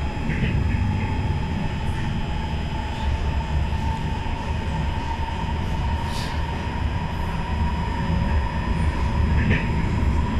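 Interior noise of an SMRT C151 metro car running between stations: a steady low rumble of wheels on rail with a steady whine above it. Two brief faint squeals come about half a second in and near the end.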